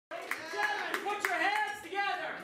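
A voice calling out, with a few sharp hand claps among it.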